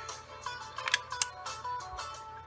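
Two sharp metallic clicks about a second in, a fraction of a second apart, from a Stevens 311 side-by-side shotgun's action being broken open, which cocks it. Quiet background music plays throughout.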